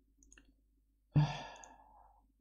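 A man sighs about a second in, a short voiced start trailing off into a breathy exhale: an exasperated sigh at getting no answer.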